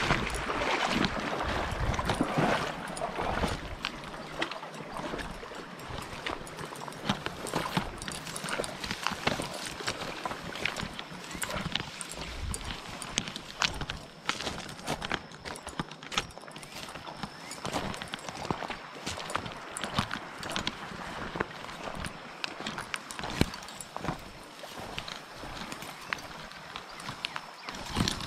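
Footsteps and dry grass stems crackling and brushing against a body-worn camera as someone walks through tall dry grass, a run of irregular clicks and rustles. A louder rushing noise fills the first two or three seconds.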